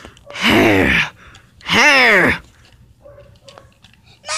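Two loud, drawn-out human sighs. The first is breathy; the second is voiced, its pitch rising and then falling. Faint clicks of plastic toys being handled follow near the end.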